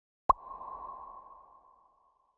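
Logo sting sound effect: one sharp hit about a third of a second in, followed by a ringing tone that fades away over about a second and a half.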